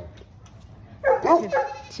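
A Nigerian Dwarf goat bleating once, a wavering call lasting just under a second, starting about halfway through.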